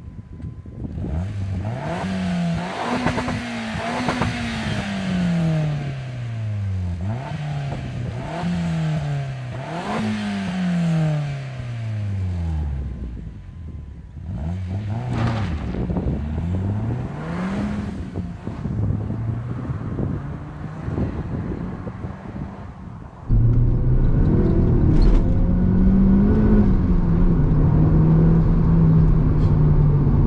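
Mitsubishi Colt CZT's turbocharged 1.5-litre four-cylinder pulling away hard, its note climbing and dropping several times as it revs through the gears. The note then falls away and rises again more faintly. About 23 seconds in the sound cuts to the same engine heard inside the cabin, running steadily and louder.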